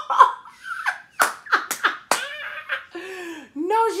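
A woman's voice laughing and exclaiming in mock shock. In the middle come about four sharp slaps, roughly a third of a second apart. Near the end there is a drawn-out vocal sound.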